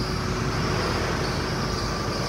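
A 2015 Veam 6.5-tonne truck's Nissan diesel engine idling steadily, heard from inside the cab. A slight noise comes from the drive belt, which the owner says goes away once water is splashed on it.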